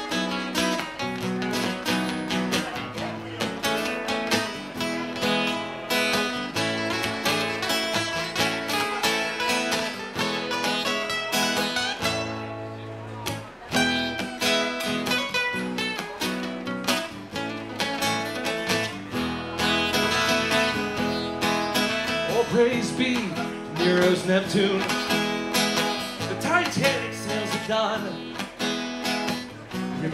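Two acoustic guitars playing live, steady strummed chords without singing. In the second half a lead line with bending notes comes in over the strumming.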